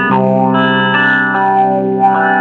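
Instrumental guitar music: sustained chords with an effects-processed tone, changing chord several times.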